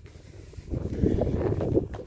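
Wind buffeting the phone's microphone: a low, gusty noise that comes up about a third of the way in and stays for the rest.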